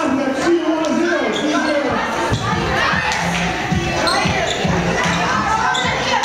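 Children shouting and cheering in a gymnasium, with frequent thumps of running footsteps on the wooden floor.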